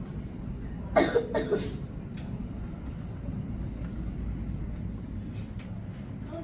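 A person coughing: a quick run of three coughs about a second in, over the low steady hum of the room.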